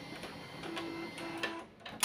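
Canon MF229dw laser multifunction printer running its start-up cycle just after being switched on: a low mechanical whirr with light clicks, and two short low hums about a second in. It stops shortly before the end.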